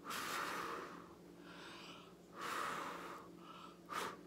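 A person blowing on wet acrylic paint to push it into a bloom: two long breathy blows, each about a second, with quieter breaths in between.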